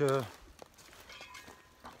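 A man's voice trails off at the start, then faint footsteps and rustling in leaf litter as he walks downhill.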